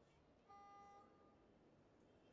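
A single electronic beep from the archery timing system, a steady two-pitch tone about a second long starting about half a second in, signalling the start of the archer's shooting time.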